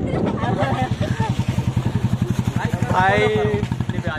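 Motorcycle engine running close by at low speed, a rapid, even putter that goes on under the voices.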